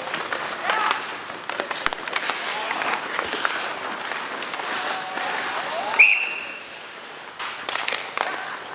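Ice hockey rink during play: a steady scraping of skates on ice, sharp clacks of sticks and puck, and spectators shouting, with one loud high shout about six seconds in.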